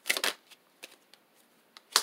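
A deck of tarot cards being shuffled by hand: a brief papery riffle, a few faint card ticks, then a sharp card snap just before the end.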